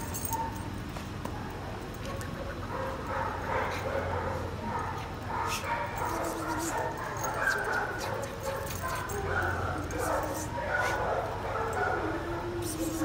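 Shelter dogs barking and whining in short, scattered, overlapping calls, with indistinct voices underneath.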